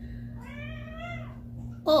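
A house cat meowing once: a single drawn-out call lasting about a second.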